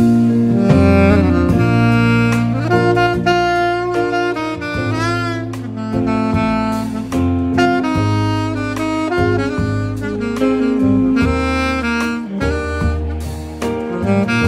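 Saxophone playing an improvised solo over a live band, with electric bass guitar notes underneath; about five seconds in the sax bends and wavers on one note.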